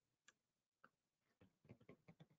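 Near silence: room tone with a few very faint, short ticks, several in quick succession near the end.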